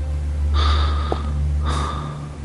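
A person breathing heavily: two audible breaths, about half a second in and near the end, over a low steady hum.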